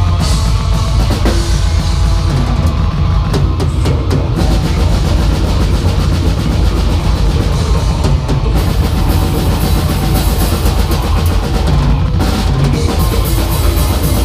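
Metal band playing live and loud: drum kit with heavy bass drum under thick guitars and bass. Cymbals wash in brighter from about eight seconds in, drop out briefly near the end, then return.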